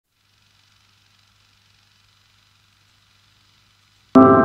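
Near silence: a faint hiss with a low, steady hum.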